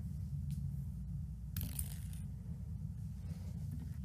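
Quiet room tone: a low steady hum, with a short faint rustle about one and a half seconds in.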